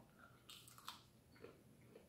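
Faint sounds of a person biting into food and chewing, with a few soft ticks about half a second and a second in.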